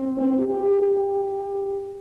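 Brass fanfare from an old TV theme: a lower note, then a higher note held for well over a second and fading away near the end.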